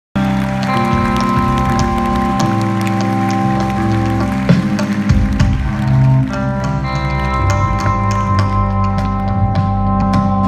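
Live band playing the instrumental opening of a song, with sustained chords over a steady bass line; the chords change about six seconds in.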